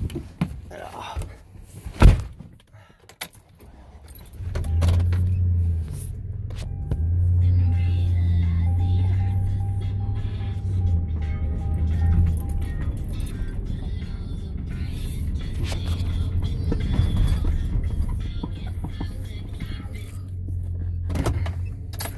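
A vehicle door shuts with a single thud about two seconds in, then the vehicle's engine runs steadily as it is driven slowly along, heard from inside the cab, with music playing.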